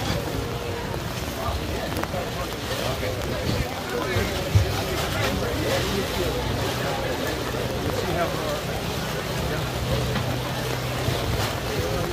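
Indistinct chatter of several people talking over a low steady hum and a rumble of wind on the microphone, with a single thump about four and a half seconds in.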